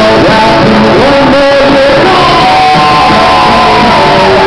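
Live acoustic guitar strummed, with a man singing over it and holding a long note through the second half.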